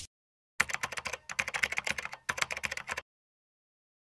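Computer-keyboard typing sound effect: a rapid run of clicks with a few brief pauses, lasting about two and a half seconds and starting about half a second in.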